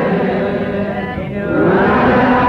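Ethiopian menzuma devotional chanting on long held notes; about a second in the voice dips and briefly fades, then the held note returns.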